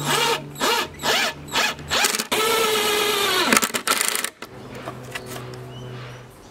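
Cordless impact driver driving a screw into wood: four short trigger bursts with the motor pitch rising and falling, then a run of about a second that winds down in pitch, followed by a brief rattle about four seconds in.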